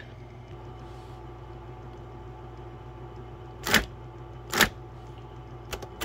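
Brother Correct-O-Ball XL-I electric ball typewriter running with a steady low motor hum. About midway, two sharp mechanical strikes come about a second apart, then a lighter click near the end, as keys are worked in its backspace-and-correct sequence.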